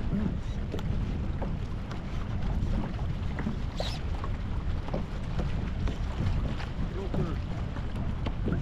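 Wind rumbling steadily on the microphone and water lapping against a kayak, with faint scattered clicks.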